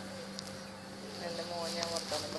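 A steady low hum with a faint voice in the background during the second half.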